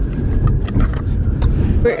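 Car cabin noise while driving: a steady low rumble of engine and road, which cuts off suddenly near the end.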